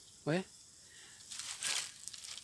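Dry palm fronds rustling and crinkling briefly, a dry papery rustle of about half a second a little past the middle.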